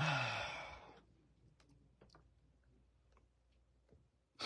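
A person sighing: a breathy exhale with a falling voiced tone, about a second long, followed by a few faint ticks.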